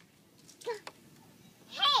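A toddler's high shouted "Come…", falling in pitch near the end, after a brief softer cry about half a second in.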